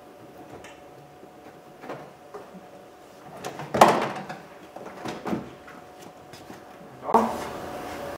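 Plastic interior door panel of a Dodge Ram pickup being lifted up and off the door, making a few sharp knocks and scrapes, the loudest about four seconds in, with a rustle near the end.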